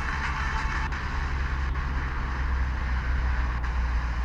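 Mobile phone FM radio hissing with static between stations as it is tuned up the band in 0.1 MHz steps, the sound dropping out briefly at each of three steps. A steady low hum runs under the hiss, which is brighter in the first second.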